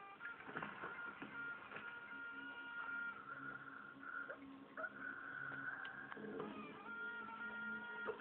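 Film soundtrack playing from a television speaker: a steady high electronic tone held over low sustained notes, with a few sharp hits.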